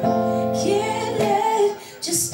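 A woman singing live with acoustic guitar accompaniment, holding and bending sung notes; the music drops away briefly near the end before she comes back in.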